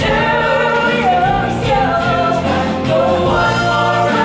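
Live stage musical number: voices singing together over band accompaniment, continuous and full.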